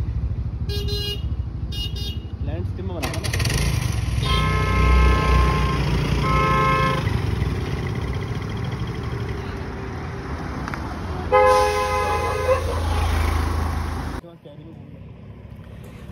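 Riding noise from a motorbike in traffic: a steady low engine and road rumble, with a vehicle horn honking twice about four and six seconds in and a lower-pitched horn about eleven seconds in. The rumble cuts off abruptly near the end.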